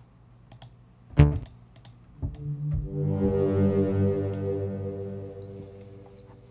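Sylenth1 software synthesizer presets being auditioned: a short, loud synth note about a second in, then a held chord that swells up and slowly fades away. A few light clicks of a computer mouse or keyboard come before the notes.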